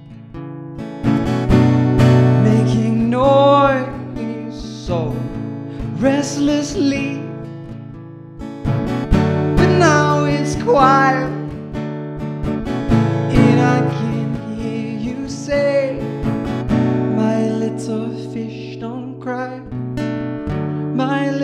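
Strummed acoustic guitar with a male voice singing in phrases: a solo acoustic performance of a pop ballad.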